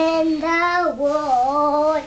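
A young girl singing a made-up song on her own, two long held notes with no instrument behind her.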